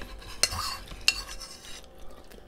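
Metal spoons clinking and scraping against ceramic soup bowls while eating, with two sharp clinks about half a second and a second in.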